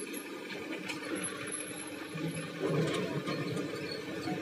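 Diesel engines of an excavator and a tractor running steadily, with a louder, rougher stretch about two and a half seconds in.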